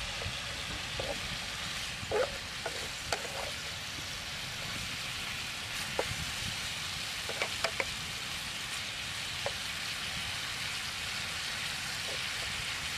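Beef and vegetables stir-frying in a frying pan: a steady sizzle, with a few scattered knocks of a wooden spatula against the pan as the food is stirred.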